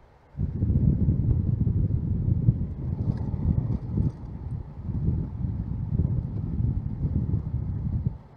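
Wind buffeting the microphone of a camera on a moving motor scooter: a loud, uneven low rumble that starts suddenly about half a second in and cuts off abruptly near the end.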